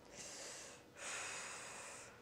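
A person breathing close to a clip-on microphone: a short breath, then a longer one about a second in.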